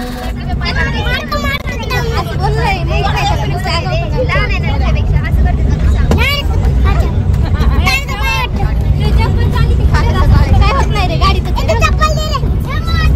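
Several voices talking and calling out over one another, some high-pitched, over the steady low rumble of a bus's engine and road noise.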